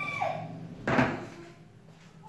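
A single sharp thump about a second in, dying away quickly.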